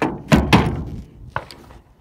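Handling knocks and thumps: three sharp knocks in the first half-second or so, then two lighter taps about a second and a half in.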